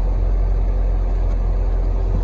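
2010 Corvette Grand Sport's 6.2-litre LS3 V8 idling steadily, a deep even rumble with no revving.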